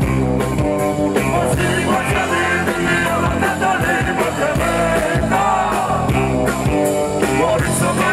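Live band music with singing over a steady drum beat and guitar, played loud at a concert.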